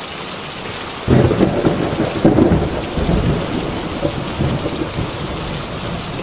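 Steady rain with a long rumble of thunder that starts about a second in and slowly dies away.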